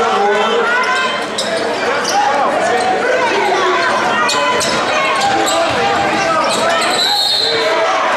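Basketball dribbled on a hardwood gym floor amid shouting voices of players and spectators, echoing in a large gym. A brief shrill high tone sounds near the end.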